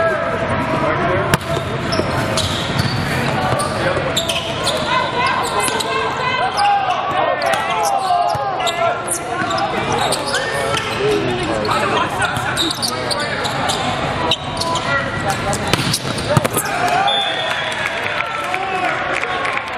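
Indoor volleyball rally in a large echoing hall: sharp hits of the ball, the loudest about a second in and another near the end, over continuous overlapping calls and chatter from players and spectators.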